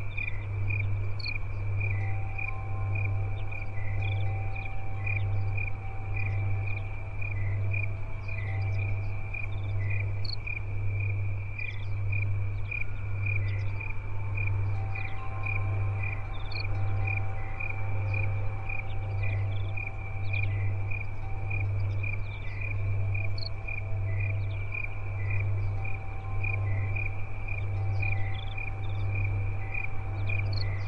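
Crickets chirping in a fast, even rhythm at one high pitch, with a few other short insect calls above them. Beneath them runs a low hum that throbs about once a second.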